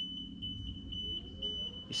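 Electronic warning alarm: one steady high-pitched tone, wavering slightly in strength, over a low rumble.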